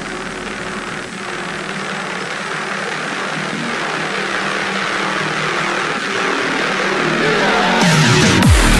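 Dark midtempo/industrial electronic music in a build-up: the deep bass has dropped out, leaving held synth tones under a swelling hiss that grows steadily louder. Right at the end the heavy bass comes back in with falling pitch sweeps.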